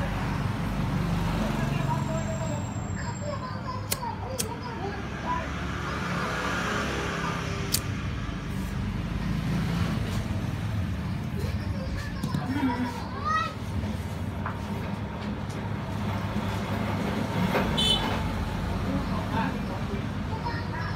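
Indistinct background voices over a steady low rumble of traffic, with a few sharp clicks of a pocket lighter being struck.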